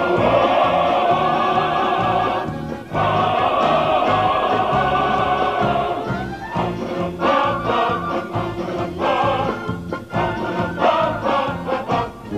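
Male military choir singing with instrumental accompaniment: two long held chords broken by a short gap about three seconds in, then shorter rhythmic phrases through the second half.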